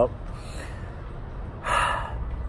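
A man's short, sharp intake of breath through the mouth near the end, after a pause with a steady low hum behind it.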